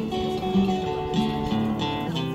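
Steel-string acoustic guitar strummed alone between sung lines of a folk song, its chords ringing steadily.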